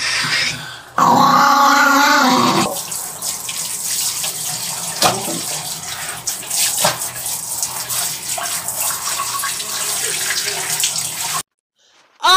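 Water running from a handheld shower head onto a small wet Maltese dog in a sink, a steady hiss with small knocks. In the first couple of seconds the dog growls with its teeth bared. The water sound cuts off suddenly near the end.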